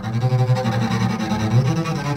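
A double bass bowed in sustained low notes, a demonstration of bowed tremolo on the instrument.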